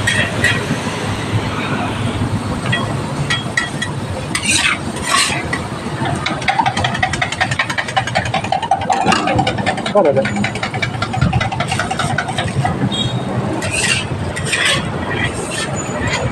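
Roadside street din: motorbike engines running and passing, with indistinct voices and scattered sharp clicks and knocks.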